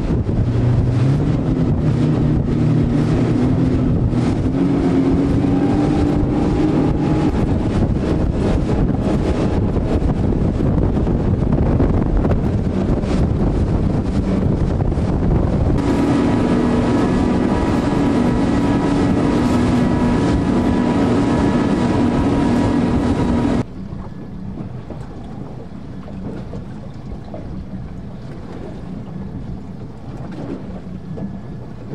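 Outboard motor boat engines running at speed, their steady drone mixed with wind buffeting the microphone and rushing water. The engine tones change abruptly about halfway through. About three-quarters of the way in it drops sharply to quieter wind and water noise without the engines.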